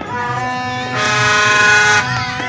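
A horn blowing one long, steady note that grows much louder about a second in, over music with a pulsing beat.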